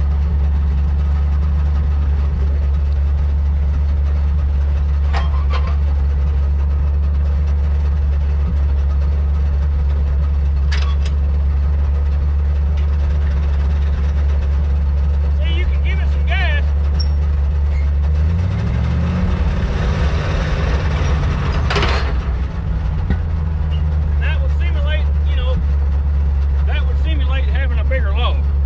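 Side-loader log truck's engine idling steadily. About two-thirds of the way through it revs up as throttle is given to swing the loader arms up, then drops back to idle. A few sharp knocks sound through it, the loudest as the engine comes off the throttle.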